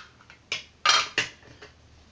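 A few sharp clinks of a razor and other hard shaving gear knocking together as an injector razor is taken out, in a quick run about a second in.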